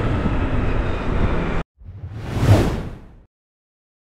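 Steady road and engine noise of a motorbike ride that cuts off suddenly, followed about a second later by a single whoosh sound effect that swells and fades out.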